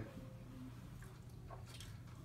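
Quiet room with a steady low hum, and a few faint, short crunches of dry saltine crackers being bitten and chewed about a second in and near the end.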